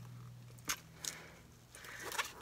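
Faint handling of a gift-wrapped hardcover book, with one sharp click less than a second in and a weaker one about a second in, over a low steady hum.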